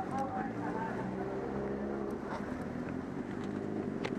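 Motorcycle engine idling steadily with a low, even rumble.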